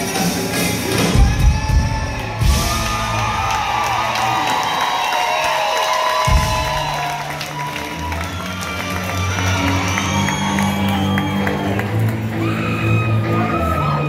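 Live country band playing loud in a concert hall: fiddle, guitars, bass and drums, with the crowd cheering and whooping over it. About halfway through, the bass and drums drop away for a couple of seconds, then come back in with a hit.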